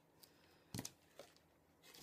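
Near silence, broken by one short knock just under a second in: a plastic glue bottle set down on the work table, with a couple of faint ticks of cardstock being handled.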